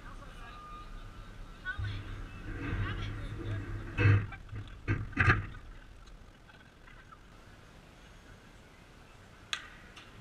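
Players' voices calling out across a softball field, with two loud short shouts about four and five seconds in. A quieter stretch follows, and a single sharp crack comes near the end.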